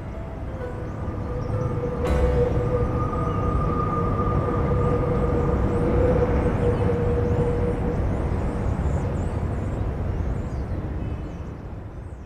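Canal barge's engine running as the barge moves forward, a steady low rumble with a held hum over it. It gets louder abruptly about two seconds in and fades slowly near the end.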